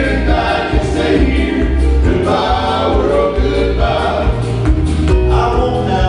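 Male gospel trio singing in harmony into microphones, over an instrumental backing track with a steady bass line.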